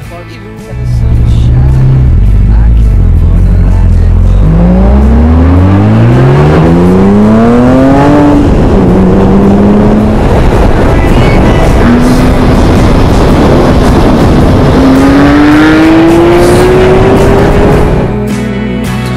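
Porsche flat-six engine accelerating hard, starting loud about a second in. The note climbs steeply, drops back at a gear change about eight seconds in, holds, then climbs again near the end, over wind and road noise.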